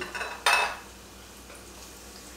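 A metal spoon clatters against a stainless steel frying pan once, about half a second in, as battered cauliflower florets are turned and lifted from the hot oil. Under it runs a faint, steady sizzle of the florets shallow-frying.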